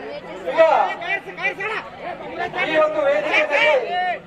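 Men's voices talking over one another in a large hall, with no other distinct sound standing out.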